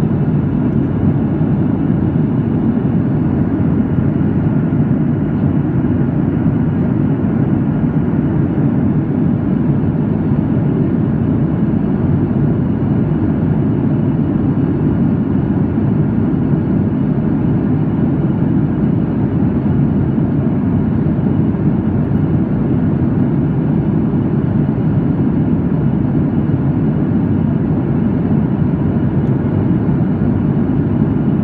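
Cabin noise of a Boeing 737 MAX 8 in cruise, heard inside the cabin from a window seat: a steady, low rush of airflow and CFM LEAP-1B engine noise with no change.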